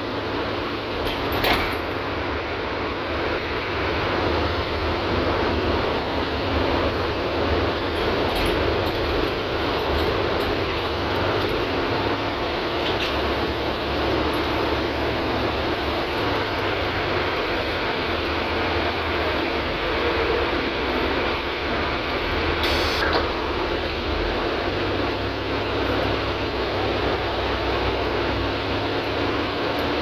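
Steady engine and road noise of a city transit bus heard from inside the passenger cabin, a low rumble with a constant hum, with a few faint rattles and one short sharp noise about two-thirds of the way through.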